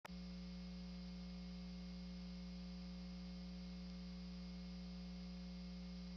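Steady electrical mains hum with its buzzing overtones on the audio track, unchanging throughout.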